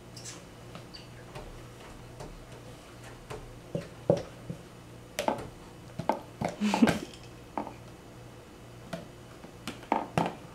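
Hollow plastic knocks and taps from a clear plastic bin being handled and bumped against a plastic stacking-ring post, a cluster of sharp knocks in the middle and a few more near the end.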